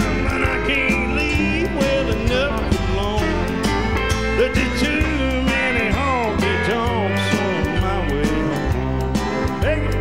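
A live country band playing a song: electric guitar over a steady bass and drum beat.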